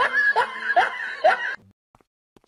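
A person laughing in short repeated pulses, about two or three a second, stopping about one and a half seconds in.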